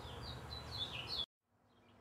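Faint bird chirps, a few short high notes that end on a rising one, over quiet background noise. The sound cuts off abruptly to silence about a second and a quarter in.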